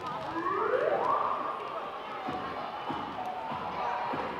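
A rising whistle-like pitch sweep about a second long, a sound effect in the routine's music playing over the gym's sound system, followed by general murmur and a few faint knocks.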